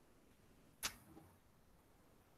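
Near silence: faint room tone on an open call microphone, with one short, sharp click just under a second in.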